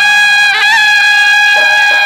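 Loud traditional procession music led by a reedy wind instrument holding one long high note, with a short wavering flourish about half a second in.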